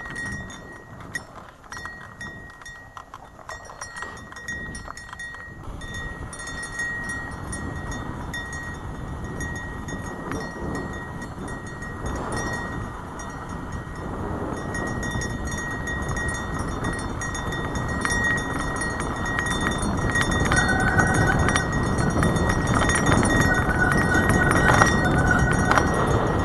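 Mountain bike rolling over a rough dirt trail: tyres crunching and the bike rattling, with wind rushing over the helmet camera's microphone. The noise grows steadily louder as the bike gathers speed.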